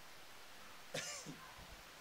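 A man's single short cough or throat-clear about a second in, against quiet room tone.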